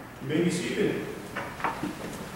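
A man's voice speaking briefly, then three light, sharp knocks in quick succession near the end, from something handled at the lectern.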